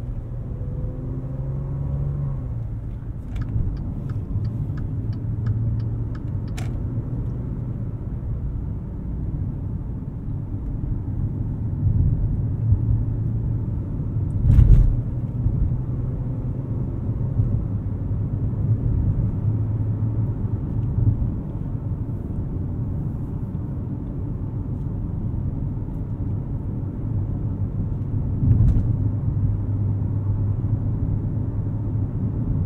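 Inside the cabin of a 2020 Maserati Levante GranSport cruising, its twin-turbo V6 humming under steady road and tyre rumble, heard through in-ear binaural microphones. The engine note climbs in the first couple of seconds, a short run of ticks follows a few seconds in, and there is a thump about halfway through and another near the end.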